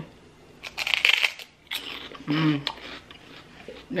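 A person biting into a crisp pork rind: a loud, crackling crunch about a second in, then a few quieter crunches of chewing.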